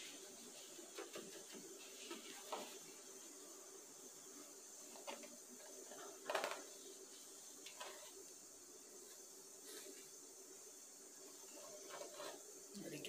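Quiet room tone with a steady faint hum, broken by a few short, soft scrapes of a finger drawing through a plastic tray of cornmeal. The clearest scrape comes about six seconds in.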